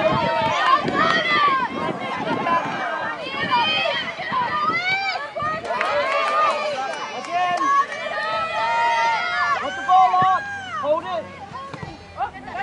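Several people's voices shouting and calling over one another, with no words clear.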